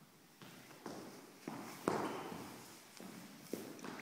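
Feet stepping and stamping on a hard studio floor as a man dances, about six irregular knocks, the loudest about two seconds in.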